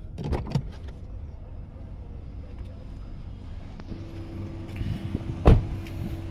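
Toyota Camry XV50 door being opened with a few latch clicks about half a second in, then shut with one loud thud about five and a half seconds in, over a steady low hum.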